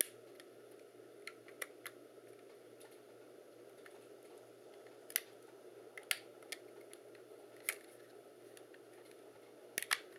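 Scattered sharp plastic clicks, about nine in all, with gaps of up to three seconds between them, over a faint steady hum: a damaged wireless PC card's plastic casing being pressed and snapped back together.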